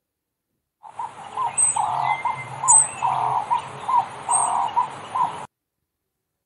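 A recorded wildlife sound: a run of short animal calls repeating two or three times a second, with three high bird chirps over them. It starts about a second in and cuts off suddenly near the end.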